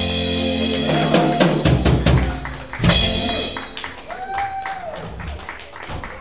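Live rock-and-roll band of upright bass, hollow-body electric guitar and drum kit playing the last bars of a song. It closes on one loud accented hit about three seconds in, and the sound then dies away.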